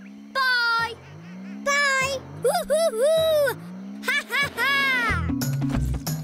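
Cartoon trampoline bounces: a low rising 'boing' about once a second, with a cartoon lion's wordless whoops and cries over them. About five seconds in it gives way to light children's background music.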